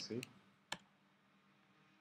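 The last syllables of a man's speech, then a single sharp click from computer input about three-quarters of a second in, then near quiet.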